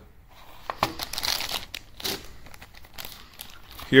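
Clear plastic zip-lock bags crinkling and rustling as parts are handled in a packed box, with scattered small clicks.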